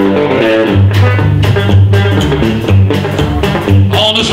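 Live band starting a country-rockabilly song: electric guitar opening, joined under a second in by upright bass and drums in a steady beat.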